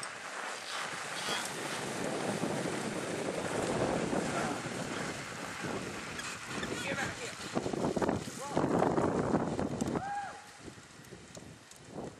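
Wind blowing across the microphone, a gusty rushing that swells about eight seconds in and drops away about ten seconds in. A faint distant voice follows just after it drops.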